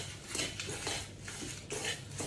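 Metal spoon scraping and stirring dry-roasting spices in a stainless steel pan. It comes in a few short scraping strokes about half a second apart.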